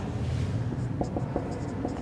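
Marker pen writing on a whiteboard: a handful of short, quick strokes over about a second as a word is written.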